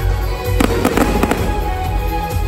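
Fireworks crackling and popping in a quick cluster of cracks about half a second in, over loud music with a steady heavy bass.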